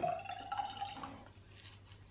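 Water dripping and trickling inside a glass bottle used as a self-watering reservoir, with a brief ringing note from the bottle in the first second that fades out.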